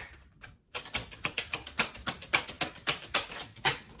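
Tarot cards being shuffled by hand: a quick, uneven run of card clicks and flicks starting about a second in.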